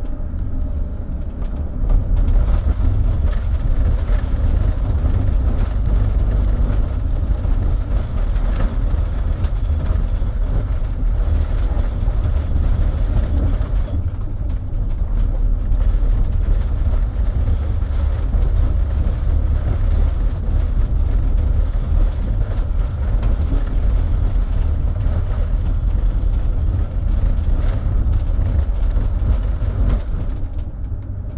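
Mercedes-Benz Sprinter City 45 minibus driving: a steady low rumble of engine and road noise, a little louder after the first couple of seconds.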